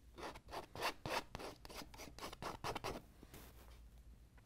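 Palette knife scraping thick oil paint across a stretched canvas in short repeated strokes, about four a second, stopping about three seconds in.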